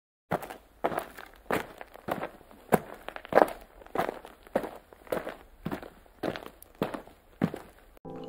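Footsteps at an even walking pace, about three steps every two seconds, each a short sharp knock.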